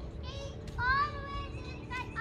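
A young child's high voice in sing-song notes: a short note early on, then a longer drawn-out note about halfway through.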